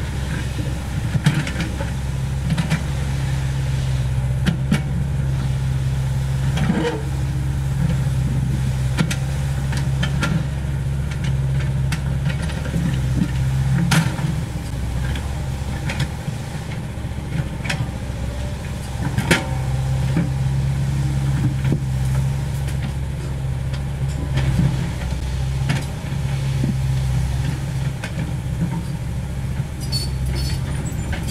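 CAT 307E2 mini excavator's diesel engine running steadily while it works, with scattered sharp clanks and knocks over the top.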